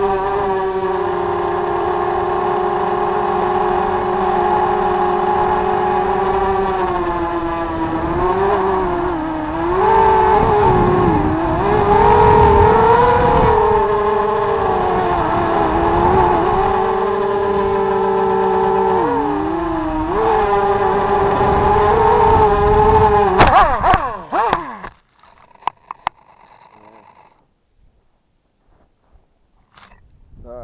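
Quadcopter's electric motors and propellers whining, heard through its onboard camera, the pitch rising and falling as the throttle changes. About 24 seconds in the motors cut out abruptly with a few knocks, leaving near quiet.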